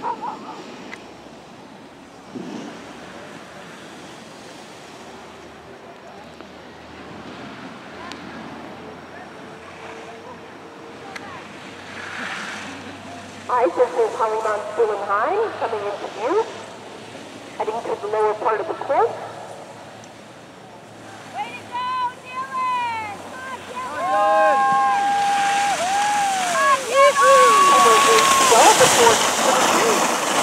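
Outdoor rush with wind on the microphone. About halfway in, people start shouting encouragement: a few bursts of calls, then a run of short repeated shouts, then long drawn-out calls. Near the end a loud hiss of skis sliding and scraping over snow builds up as the racer passes close by.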